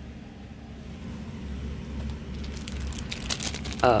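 Plastic packaging crinkling and crackling as it is handled, picking up in the second half, over a steady low hum.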